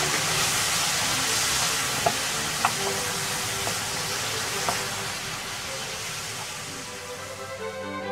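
Udo stalks sizzling in hot oil in a frying pan as they are stir-fried with a wooden spatula, with a few light clicks of the spatula against the pan. The sizzle dies down toward the end as background music comes up.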